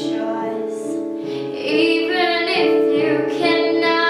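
A teenage girl singing solo, holding long notes with a slight waver in pitch, over a backing track.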